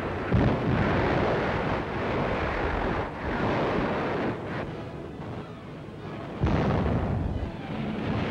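Depth charges exploding at sea, heard on an old newsreel soundtrack. A sudden blast comes just after the start and a louder one about six and a half seconds in, each followed by a long rumbling roar.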